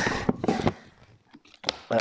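A plastic dog-food bag being handled as it is opened: a few soft rustles and crinkles, a near-quiet stretch in the middle, then a few short clicks near the end.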